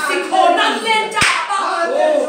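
Voices of a small church gathering with hand clapping; one sharp clap stands out just past the middle.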